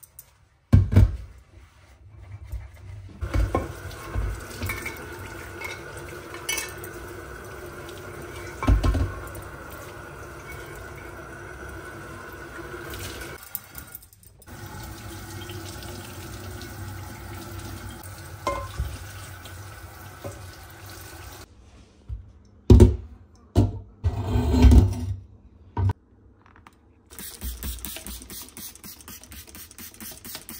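Kitchen tap running into a stainless steel sink while dishes are scrubbed and rinsed, with a few loud knocks of a baking dish and a pan against the sink. Near the end, a run of quick squirts from a trigger spray bottle.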